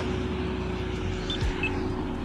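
Road traffic passing through an intersection: a steady rumble of car engines and tyres.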